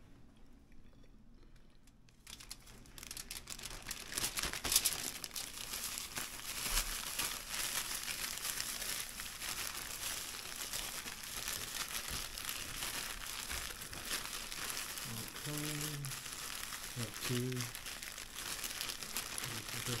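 Clear plastic shaker bag of seasoned breading mix crinkling and rustling without a break as it is shaken and squeezed by hand to coat pork chops. The rustling starts about two seconds in.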